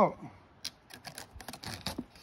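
Fingers picking and scratching at packing tape on a cardboard shipping box, a scatter of small clicks and scrapes.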